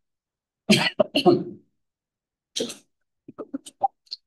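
A person coughing, run together with a short spoken word, then another brief breathy noise and a few faint short sounds near the end.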